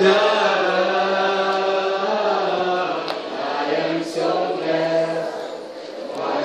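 A group of people singing a slow worship song together, holding long notes with brief breaks between phrases.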